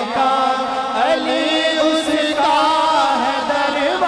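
Male voices singing a naat, drawing out long, wavering melismatic notes through a sound system.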